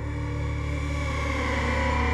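Background music: slow, dark ambient track with sustained low bass notes and held chords.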